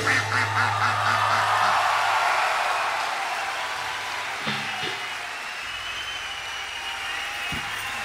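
Concert crowd cheering and applauding as a rock song ends, with the band's last low bass note ringing out and dying away over the first two seconds or so. The cheering slowly fades.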